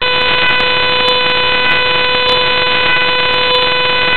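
A loud, steady electronic buzz at one fixed pitch over a hiss, starting abruptly and holding unchanged throughout.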